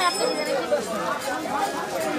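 Several people talking over one another: mixed background chatter.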